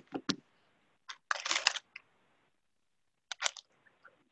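Background noise coming through a video call from another participant's unmuted phone: a few sharp clicks, a short burst of noise about a second and a half in, and more clicks near the end.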